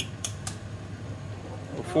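A few quick sharp taps of a knife on an eggshell to crack it over a frying pan, all in the first half second, then a faint steady hiss of eggs frying in the pan.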